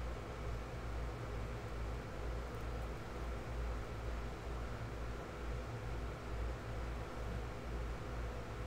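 Steady low hum and hiss of background room noise, with no distinct sound events.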